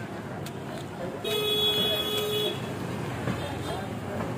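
A vehicle horn sounds once, a steady held toot of about a second starting about a second in, over street traffic noise.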